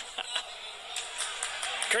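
Live football match ambience: steady crowd and pitch noise with several short, sharp knocks from about a second in, then a man's voice starting at the very end.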